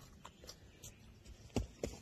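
Footsteps on a dirt trail: quiet at first, then a couple of soft steps near the end.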